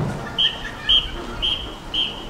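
Drum major's whistle blown in four short, evenly spaced blasts about half a second apart, all at one high pitch: the count-off signal that starts the marching band.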